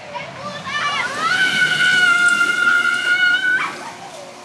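Roller coaster riders screaming as the train passes: a few short cries, then one long high scream that rises and holds for about two and a half seconds before cutting off. Under it is the rushing rumble of the coaster train on its steel track.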